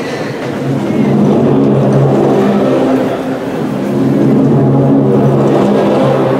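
Processional music begins with two long held chords, the first coming in about a second in and the second about halfway through. Under them is the rustle of an audience rising to its feet.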